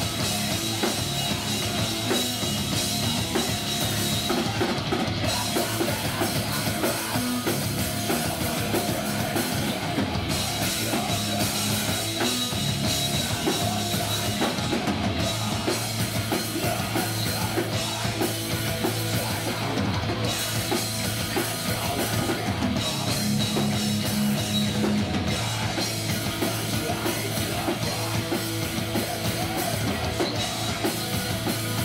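A heavy metal band playing live: distorted electric guitar, bass guitar and drum kit, loud and continuous.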